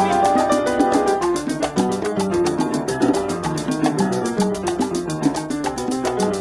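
Salsa band recording in an instrumental passage: piano lines over a bass line, with a fast, even pattern of sharp percussion ticks.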